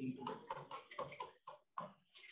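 Stylus tapping and scratching on a pen tablet while words are handwritten: a quick, irregular run of light clicks, about five a second.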